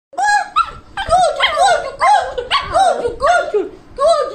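Lhasa Apso barking: a quick run of about eight short, high-pitched barks, about two a second, each rising and falling in pitch.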